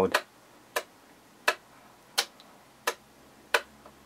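A string of sharp, evenly spaced ticks, about three every two seconds, over a quiet background.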